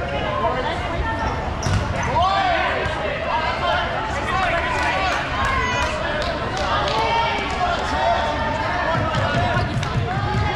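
Dodgeballs bouncing and hitting the hard gym floor, several sharp thuds, among players' shouts and calls.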